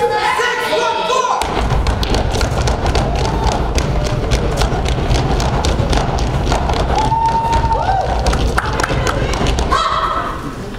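Step team performing on a stage: a dense run of stomps and sharp claps that starts about a second and a half in, with voices calling out over it.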